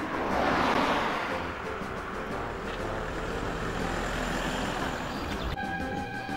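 A car passing close by on the road: tyre and engine noise swells about a second in and fades into steady traffic noise. Music starts near the end.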